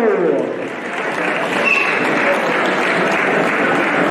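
An audience applauding, a dense and steady clapping that swells in as a man's amplified voice trails off at the start.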